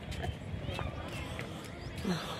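Faint voices in the background over steady outdoor noise, with a few light taps.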